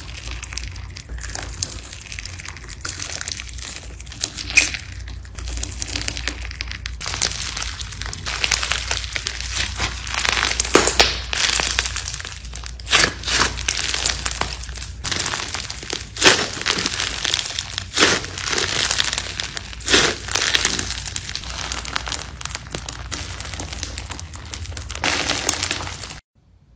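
Slime being squeezed and kneaded by hand, giving a dense crackling with sharp pops; from about a third of the way in the pops come louder, every second or so.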